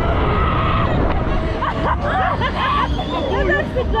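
Several riders on a KMG Inversion fairground ride talking and calling out over each other, over a continuous low rumble of wind on the microphone. A steady high tone sounds for about a second at the start.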